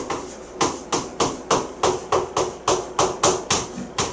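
Chalk writing on a chalkboard: a rapid run of short, sharp taps and scrapes, about four or five a second, as an equation is written out stroke by stroke.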